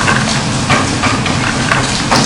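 Steady hiss of classroom background noise, with a few faint knocks.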